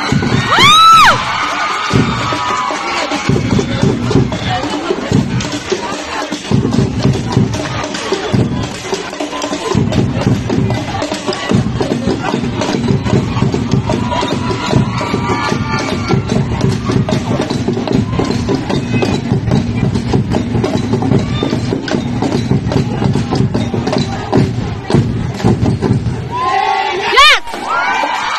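Drum-cheer squad drumming a continuous rhythm over a cheering, shouting crowd. A loud rising pitched note sounds about a second in.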